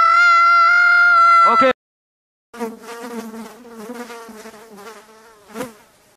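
A loud, steady, high-pitched electric guitar amp feedback tone that cuts off abruptly with a short falling glide. After a brief silence, a quieter wavering buzz follows and fades out near the end.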